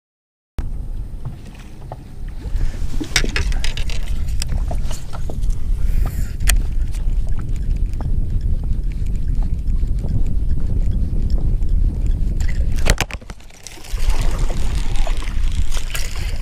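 Wind buffeting the microphone in a steady, fluctuating low rumble, starting about half a second in. Over it come scattered clicks and knocks of fishing tackle handled on a bass boat, and water splashing near the end.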